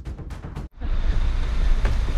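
Background music with regular drum strikes breaks off abruptly under a second in. It gives way to wind rumbling on the microphone outdoors.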